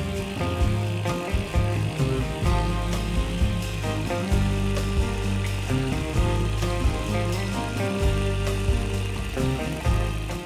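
Tiny SEMTO ST-NF2 inline two-cylinder four-stroke nitro glow engine running under background music.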